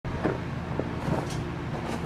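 A steady low mechanical hum, like a running motor, with a few brief soft knocks in the first second or so.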